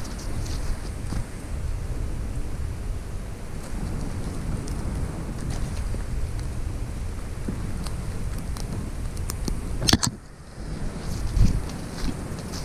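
Steady wind rumble on the microphone with rustling of leaves and brush while walking through undergrowth; a sharp crackle about ten seconds in.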